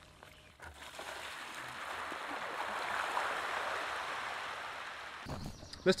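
Water splashing steadily out of a pump's garden-hose outlet, swelling toward the middle and fading near the end.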